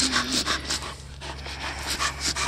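Dog panting through a wire basket muzzle, a quick regular series of breaths at about four a second with a brief lull midway.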